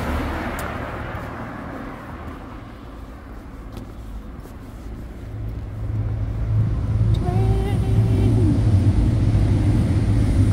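A car passes close by, its engine and tyre noise swelling at the start and fading away over the next two seconds. About halfway through, a steady low rumble builds and holds, with a brief pitched tone in it near the end.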